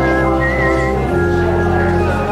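Organ music: sustained chords that change about a second in, under a high melody line with vibrato.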